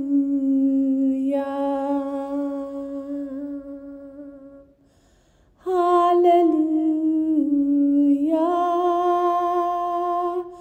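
A solo voice sings long, wordless held notes with no accompaniment. The first note fades out just before the middle, and after a short pause a second note steps down and back up in pitch.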